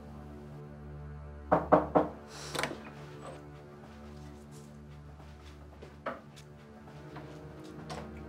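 Background score with sustained low notes, and about a second and a half in a quick cluster of sharp knocks and clunks, with one more a moment later: a pair of heavy carved wooden doors being unlatched and swung open.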